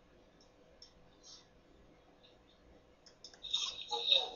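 Faint scattered clicks from a computer mouse working a media player's seek bar, over low hiss and a faint steady hum. About three seconds in, a louder, choppy burst of sound breaks in.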